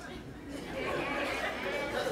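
Live theatre audience chattering and murmuring in a large hall, swelling about half a second in and holding steady.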